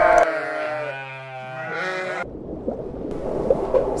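A sheep bleating: one long, quavering baa that cuts off abruptly about two seconds in.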